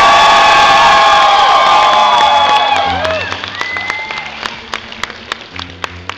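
Audience cheering with high whoops and yells over applause as a song ends. It is loudest at first and dies down after about three seconds to scattered claps.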